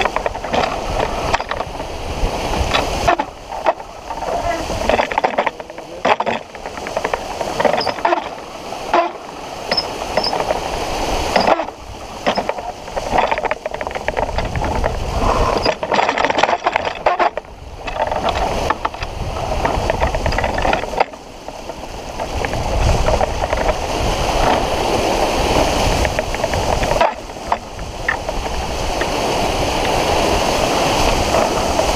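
Wind buffeting a camera microphone over the rush and splash of water along a sailboat's hull as it sails heeled. The noise surges and drops unevenly, with several brief sudden lulls.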